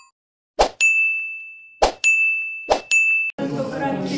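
Subscribe-button sound effects: three sharp clicks, each followed by a bright, high-pitched ding that holds and fades. About three and a half seconds in, voice and music begin.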